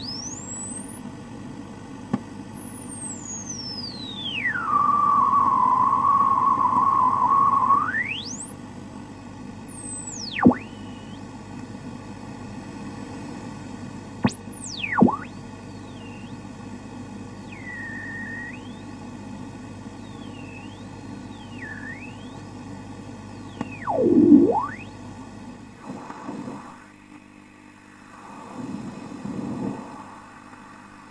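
Radio static: a steady hiss and hum with interference whistles gliding up and down in pitch. One whistle sweeps down and holds a steady tone for a few seconds, and several shorter swoops follow. The hiss drops away briefly near the end.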